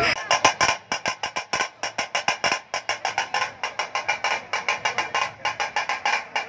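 Rapid drumming of sharp strokes, about six or seven a second, going on without a break.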